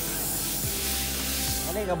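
A steady hiss over sustained background music. A voice begins near the end.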